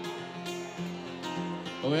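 Live band playing between sung lines: strummed acoustic guitar over bass and electric guitar, softer than the verses. A man's singing voice comes back in near the end.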